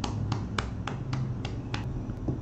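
Hands making light, sharp clicks at an even pace of about three a second, in the manner of rhythmic finger snaps or quick light claps.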